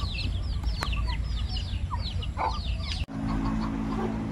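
Desi (native-breed) chickens calling with many short, high, falling peeps in quick succession, and a single sharp click about a second in. About three seconds in the sound cuts abruptly to a steady low hum.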